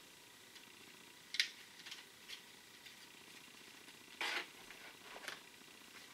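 Handling noise from fishing-lure packaging: a sharp click about a second and a half in, a few faint ticks, and a brief rustle just after four seconds, as plastic lure packs and the cardboard box are handled.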